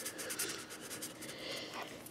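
Faint scratching of a marker tip on paper while a drawing is coloured in.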